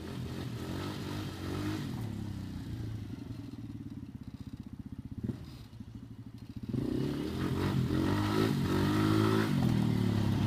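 A quad (ATV) engine running as the quad rides along a dirt trail, its pitch rising and falling with the throttle. It gets clearly louder about two-thirds of the way in as the quad comes close.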